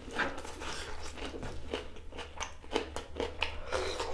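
Close-miked wet chewing and mouth sounds of a person eating a mouthful of rice and cooked beef: irregular lip smacks and clicks, several a second, over a steady low hum.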